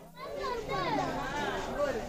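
Children's voices talking and calling out, high-pitched and lively, starting about a third of a second in after a brief lull.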